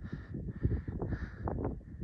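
Wind buffeting the microphone: an uneven low rumble that swells and dips.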